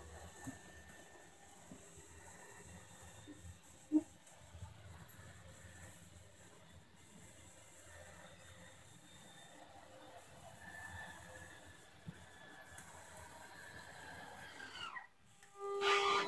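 Faint steady whir of an RV slide-out motor pulling the bedroom slide in. Its whine drops in pitch and cuts off suddenly near the end as the slide stops.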